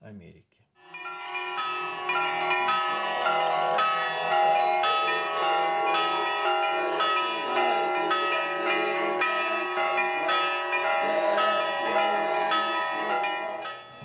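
Church bells being rung in a peal, with repeated strikes in a steady rhythm over a sustained ring of many overlapping tones, starting about a second in.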